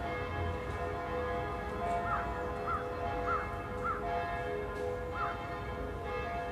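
Bells ringing, their steady tones overlapping as new strokes come in. A bird calls five short times through the middle, four of them about half a second apart.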